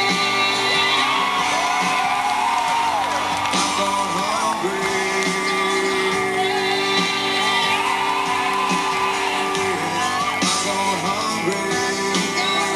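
Live rock band playing: male voices singing with long held notes and sliding wails over electric guitar and drums.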